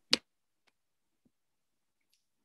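A single short, sharp click near the start, followed by dead silence on the call's audio.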